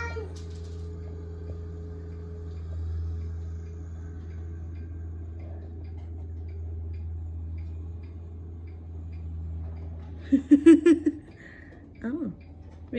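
Compact utility tractor's engine running steadily as it plows snow, heard through a house window as a low hum. About ten seconds in, a brief run of high-pitched, wavering squeaky vocal sounds.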